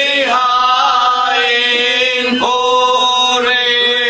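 Slow, chant-like sung hymn: voices hold long notes that change pitch every second or so, with no pauses.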